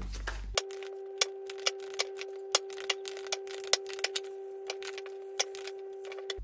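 A steady held tone with fainter higher tones, overlaid by sharp clicks at irregular intervals, about two a second; it starts about half a second in and cuts off just before the end.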